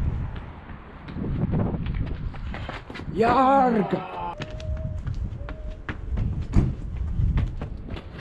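Footfalls and scuffs of a parkour runner on brick paving and walls, with a drawn-out wordless shout about three seconds in and a sharp thump about two-thirds of the way through as the runner hits the brick wall.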